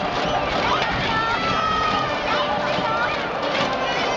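Large cheering section of a baseball crowd shouting and yelling together, many voices overlapping in a continuous din with individual yells rising above it.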